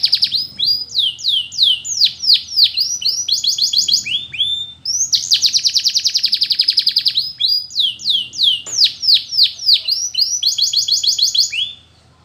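Domestic canary singing: a long rapid trill at the start and another about halfway, each followed by a run of falling sweeping whistles and shorter trills. The song breaks off just before the end.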